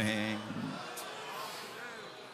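A man's voice holding the drawn-out end of a preached phrase for about half a second, then stopping, leaving a low murmur of hall room tone with a single faint click about a second in.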